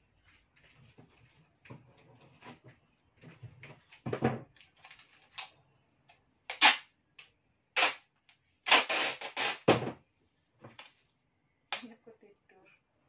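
Clear packing tape being pulled off its roll: several short rips, then one longer pull of about a second. Before it, quieter rustling and small knocks as the roll is handled and its end is picked free.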